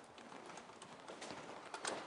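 Faint, scattered light clicks and taps over a quiet room hiss, two of them close together near the end.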